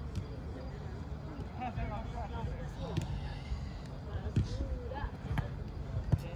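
Soccer ball being kicked on an artificial-turf pitch, a few sharp thuds in the second half, among scattered shouts and calls from players, over a steady low rumble.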